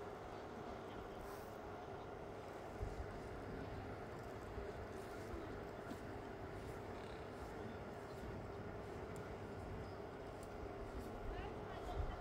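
Faint, indistinct voices over steady low background noise.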